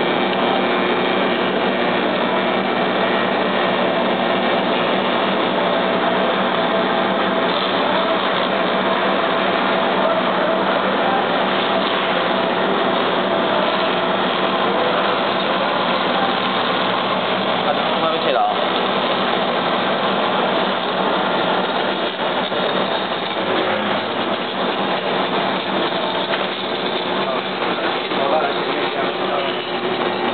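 Automatic PCB lead-cutting machine running steadily, its high-speed blade spindle and conveyor making a constant machine sound, with voices chattering in the background.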